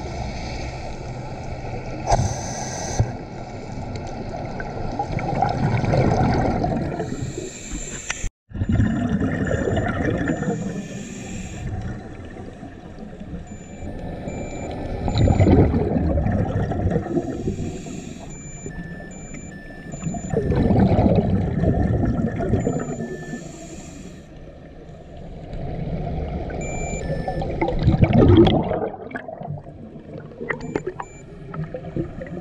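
Scuba diver's exhaust bubbles rumbling and gurgling out of a regulator underwater, in surges every five or six seconds with each exhaled breath.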